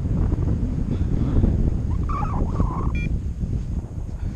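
Wind buffeting the camera microphone of a paraglider in flight: a steady low rumble. About two seconds in there is a brief higher wavering sound, then a short beep.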